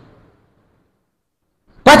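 Near silence in a pause between sentences of a man's speech; his voice resumes just before the end.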